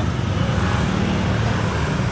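A motor vehicle engine running steadily at idle, a low even hum with no change in speed.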